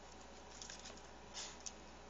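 Chihuahua rummaging inside a fabric bag of papers and folders: faint, scattered rustles and scrapes, with a louder rustle and then a sharp click about a second and a half in.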